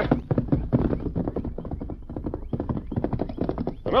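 Galloping horse hoofbeats, a 1940s radio-drama sound effect: a rapid, continuous run of clip-clop strikes.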